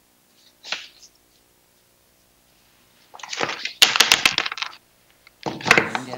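A short scraping sound under a second in, then a clatter of sharp clicks and rustling from about three seconds in, lasting nearly two seconds.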